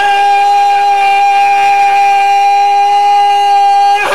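A man's voice holding one long, loud note at a steady pitch for about four seconds.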